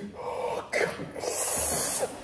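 A man's strained throat noises and noisy breathing, building to a loud hissing rush of breath for the last second.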